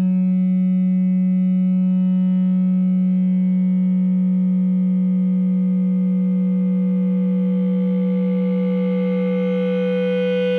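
Prepared electric guitar sustained by an EBow. A 3D-printed arched ring couples the 3rd and 5th strings, making them inharmonic and giving a gong-like sound. One steady low tone is held throughout under a stack of overtones; the upper overtones waver and shift in the second half, and a higher overtone swells toward the end.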